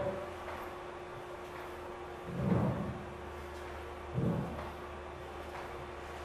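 Two dull thumps of sneakers landing on a wooden floor during lateral hops, about two and a half and four seconds in, over a steady low hum.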